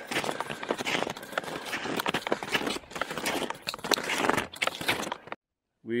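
Snowshoes crunching on packed snow in a walking rhythm of irregular crunches and clicks, cutting off abruptly a little over five seconds in.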